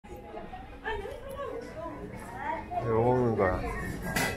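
Indistinct voices of people talking in a food court, with one voice louder and clearer about three seconds in.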